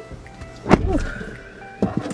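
Inside a parked car, a heavy thump about two-thirds of a second in, then a short, steady, high electronic chime tone and a sharp click near the end, over background music.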